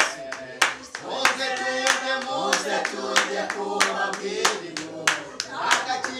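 A group of people clapping their hands together on a steady beat, about one and a half claps a second, while singing together.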